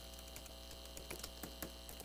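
Faint, irregular clicks of computer keyboard keys being typed, over a low steady electrical hum.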